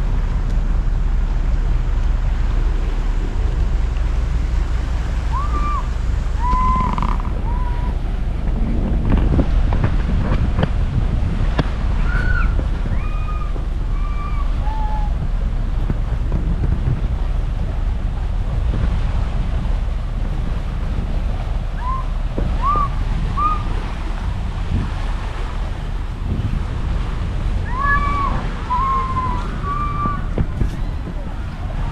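Wind rumbling on the microphone over small waves washing against a stone seawall, with a few groups of short whistled notes coming and going.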